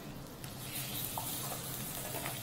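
Okara (soybean pulp) dropped into hot lamb fat in a stainless steel saucepan, sizzling. The sizzle grows stronger about half a second in.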